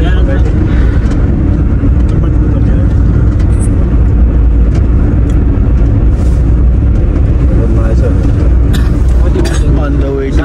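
Steady, loud low rumble of a moving car heard from inside the cabin: engine and road noise.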